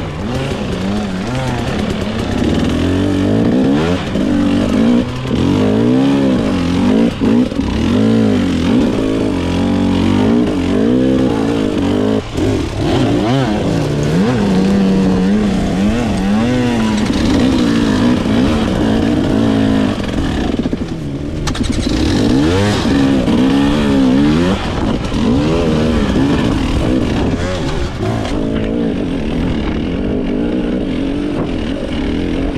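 Enduro dirt bike engines revving up and down over and over, pitch rising and falling every second or two, as the bikes climb a steep rocky slope under load.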